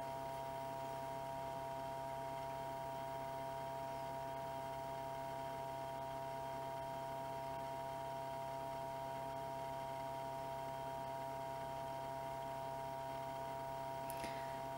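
A steady, unchanging hum with several fixed tones over a faint hiss, and no other sounds.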